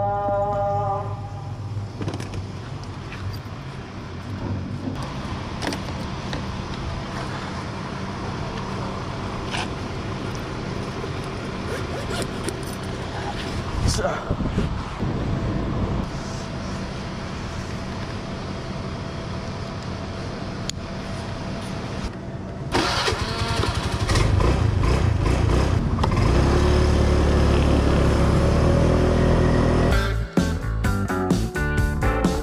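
Street ambience with scattered clicks and knocks of a scooter being handled, then the small engine of a rented scooter starts about three-quarters of the way through and runs steadily and loudly.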